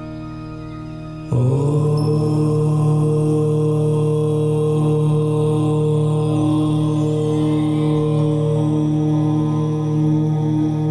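A single long chanted 'Om' in a low voice starts suddenly about a second in and is held steadily, loud, over a softer sustained meditation-music drone.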